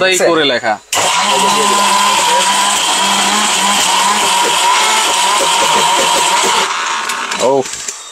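ORPAT mixer grinder switched on about a second in, its motor running at speed with a steady whine while it grinds turmeric and water into paste in the stainless-steel jar. After about six seconds it is switched off and spins down.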